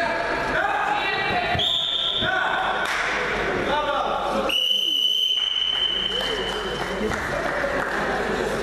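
Voices calling out in a sports hall during a wrestling bout, with thuds of the wrestlers on the mat. Two high steady whistle-like tones sound over it, a short one about one and a half seconds in and a longer one of about two seconds from the middle.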